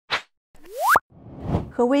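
Intro sound effect: a short pop, then a rising tone that climbs steeply and cuts off abruptly about a second in, followed by a swelling whoosh. A woman starts speaking near the end.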